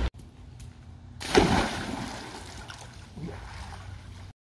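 A person plunging into a swimming pool. A loud splash comes about a second in, followed by water churning and sloshing as it settles.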